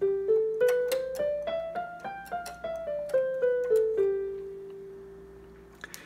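Casio CTK-3200 electronic keyboard playing a one-octave G-to-G scale on the white keys, the G mixolydian mode, one note at a time. It climbs eight steps at about three notes a second, comes back down, and the final low G is held and fades away.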